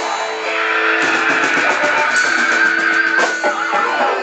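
Live dangdut band playing, with an electric guitar lead holding one long, slightly wavering high note for about two and a half seconds over the band.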